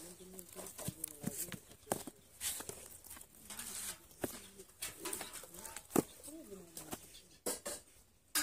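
A dove cooing repeatedly in low, smooth, rising and falling notes, mixed with scattered sharp clicks and knocks.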